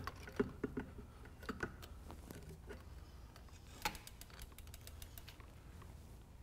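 Faint, scattered clicks and light knocks of a mountain bike being hung on a spare-tire-mounted bike rack, with a quick run of fine ticks about four seconds in.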